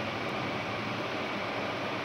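Steady, even hiss of background noise on the narration's voice recording, with no speech.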